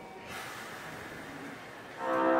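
Steady hiss of compressed air from a stationary Nankai 12000 series electric train, starting abruptly about a third of a second in: the air brakes releasing just before the train pulls out.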